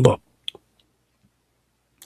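A man's spoken word ending, then a single brief click about half a second in.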